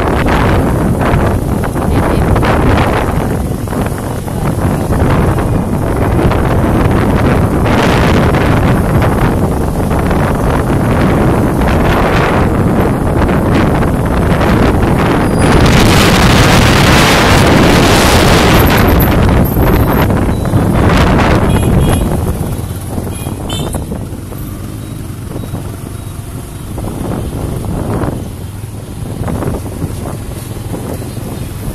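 Wind buffeting the microphone as a heavy, uneven rush, loudest in a gust a little past halfway and easing off about two-thirds in, over the sound of passing motorbike traffic.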